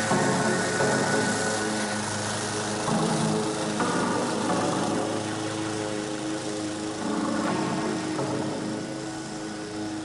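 Background music, with pitched lines that change every few seconds.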